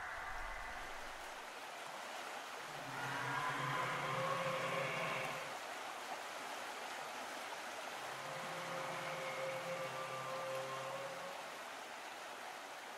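Shallow creek water flowing over rocks, a steady babble. Faint low sustained tones swell in twice, about three seconds in and again about eight seconds in.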